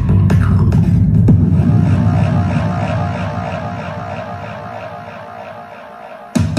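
Electronic dance music played through Crewn 1208 full-range 30 cm karaoke loudspeakers: a heavy bass beat that drops away after about two seconds, leaving a repeating synth arpeggio as the track fades out steadily toward the end.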